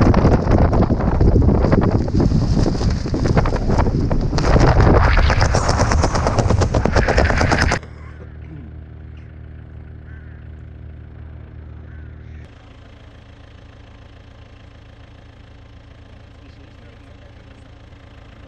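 Wind buffeting the microphone of a camera on a skydiver under an open parachute, a loud, rapid fluttering rush. About eight seconds in it cuts off suddenly to a much quieter steady low hum.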